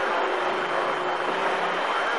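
Steady CB radio static, an even hiss with a faint steady tone in it, heard while nobody transmits.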